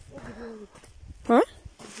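Speech: a brief exchange outdoors, ending in a loud, sharply rising questioning 'A?' about a second in.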